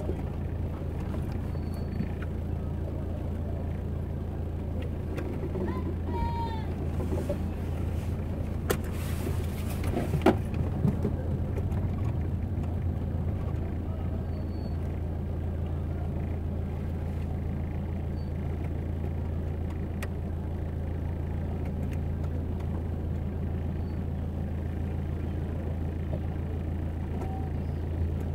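Steady low engine hum of a car crawling at walking pace through a crowded street, with scattered voices of passers-by and a couple of sharp knocks about ten seconds in.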